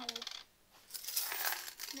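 Metal coins clinking and rattling together in a quick jangle that starts about a second in and lasts about a second.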